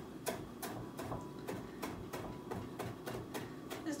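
Kitchen knife rough-chopping fresh Italian parsley on a wooden cutting board: a steady run of sharp taps, about three a second.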